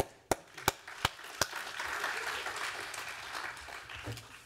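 Audience applauding: a few single claps in the first second and a half, then clapping from the whole room that fades toward the end.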